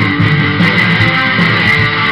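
Guitar strummed in a loud live rock song, played between sung lines with no vocals.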